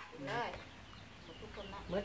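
A short shouted exclamation, then faint, high, brief clucks of a chicken in the background near the end.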